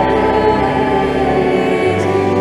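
Church singing of the responsorial psalm between the Mass readings: voices holding long sung notes over steady, sustained accompanying tones.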